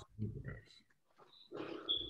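A person's voice mumbling quietly in two short, indistinct bursts, muffled and compressed through a video-call connection.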